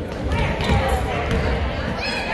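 A basketball dribbled on a hardwood gym floor, with repeated bounces echoing in a large hall. Voices of players and spectators carry over it.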